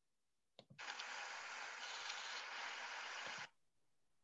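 Faint open-microphone noise on a video call: a couple of soft clicks about half a second in, then about three seconds of steady hiss that cuts off abruptly.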